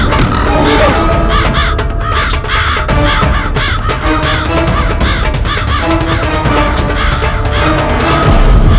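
A flock of crows cawing over and over, many calls overlapping, over background music with held notes and a low rumble.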